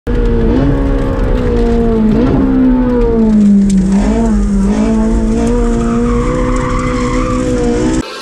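Ferrari 458 Speciale's 4.5-litre V8 running hard, heard from inside the cabin, its note holding fairly steady with brief dips in pitch, while the tyres squeal in a slide. It cuts off abruptly at the end.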